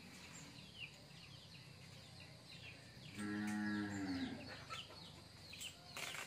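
A cow mooing once, a single call just over a second long that drops in pitch at its end, over small birds chirping.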